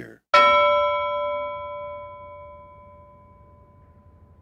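A bell struck once, ringing with several clear tones that slowly die away over about three and a half seconds.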